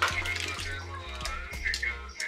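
Background music with a steady bass line and a beat about twice a second, over a thin stream of milk pouring from a carton into a large metal stock pot.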